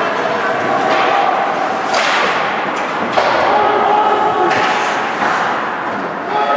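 Ice hockey game heard rinkside: spectators' voices with a few sharp knocks of play against the boards and glass, the loudest about three seconds in.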